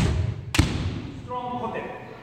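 Two sharp bamboo shinai strikes on kendo armour about half a second apart, the first right at the start, struck in quick succession as a combination that opens with a forceful kote. A man's voice follows about a second later.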